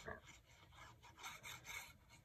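Faint rubbing of a liquid glue bottle's tip drawn along the edge of cardstock, a short stroke at the start and a few soft strokes in the second half.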